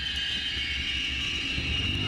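Experimental noise-drone music: a dense, steady low rumble under a thin, sustained high ringing tone.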